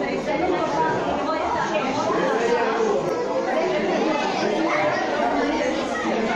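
Indistinct chatter of several people talking at once in a large hall, no single voice clear.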